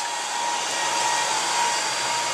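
Steady whirring machine noise with a thin, steady high whine, from equipment coming on as the house circuits are switched back on, now running on generator power.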